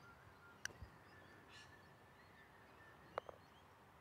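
A putter striking a golf ball once, a single sharp click a little over half a second in, against near silence with faint bird chirps. Two short knocks follow about three seconds in.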